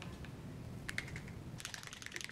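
Faint clicks and rattles from a small plastic bottle of sunscreen fluid being shaken and opened: a few clicks about a second in, then a quick run of clicks near the end.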